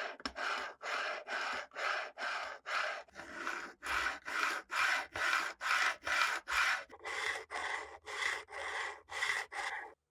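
Sanding block rubbed back and forth along the metal frets of a Fender Stratocaster maple neck, fret leveling, in even scraping strokes about two to three a second. The scrape turns brighter about seven seconds in.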